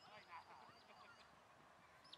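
Faint bird calls: a quick run of short high chirps with some lower honk-like calls in the first second, over an otherwise near-silent background.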